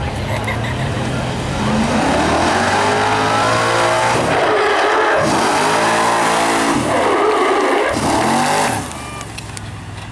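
Vintage fire truck's engine revving up and down hard several times, then dropping away suddenly about a second before the end.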